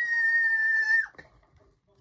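A child's long, high-pitched shriek held on one note, ending about a second in with a quick downward slide.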